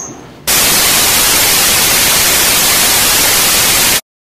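Loud, steady hiss of white-noise static, like a dead TV channel, used as a broken-signal effect. It cuts in suddenly about half a second in and stops abruptly at the end.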